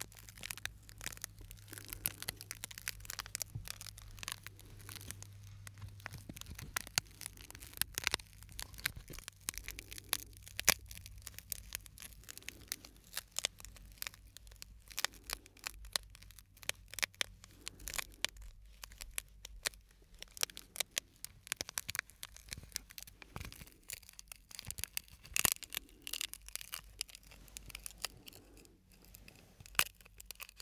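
A small piece of broken glass handled between the fingers close to the microphones, giving dense, irregular crackling and sharp clicks with a few louder snaps.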